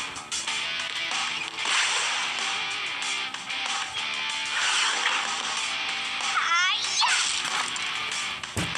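Cartoon episode soundtrack: steady background music with quick swishing sound effects, and a short rising sound effect late on.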